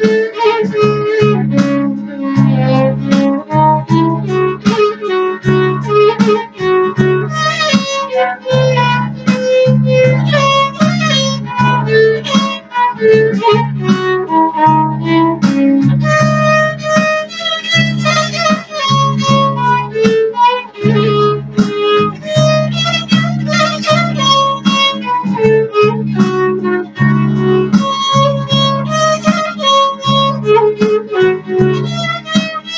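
Violin playing a flowing melody over a backing accompaniment with a repeating low chord pattern and a regular beat.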